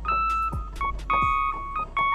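Software electric piano (Lounge Lizard EP-4) playing a quick melodic run of single notes and two-note chords, held to a blues minor scale by the Autotonic app. Behind it runs a drum beat of sharp high hits and low hits that drop in pitch.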